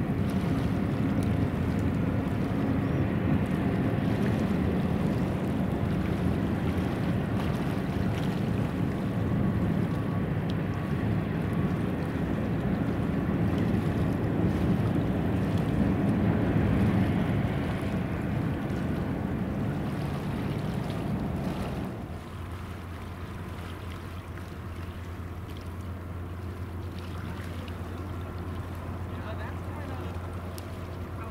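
Marine diesel engines of harbour tugs pushing a large bulk carrier: a steady low drone, with wind on the microphone. About two-thirds of the way through the drone drops off sharply, leaving a quieter steady low hum.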